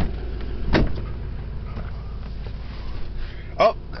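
Pickup truck cab door opening and someone climbing in, with a sharp click at the start and a heavier thump about three-quarters of a second in, over a steady low rumble.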